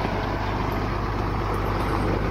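Single-axle diesel dump truck pulling away, its engine running with a steady low drone.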